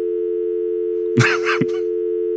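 Telephone dial tone: the steady two-note North American hum of an idle line, heard after the call has been hung up. A short laugh cuts across it about a second in.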